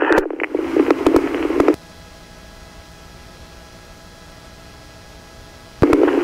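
Police radio channel hissing with static for under two seconds, then cutting off abruptly as the squelch closes. A quieter steady background hum with a comb of faint steady tones follows, until the radio keys up again with a burst of static just before the end.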